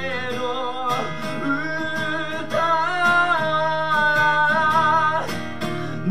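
A man singing long, wavering held notes to his own strummed acoustic guitar, played live.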